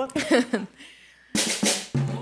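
A short laugh, then about a second and a half in a quick run of drum hits, like a fill on a drum kit, leading straight into music.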